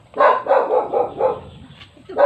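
A dog barking, a quick run of about five barks in the first second and a half.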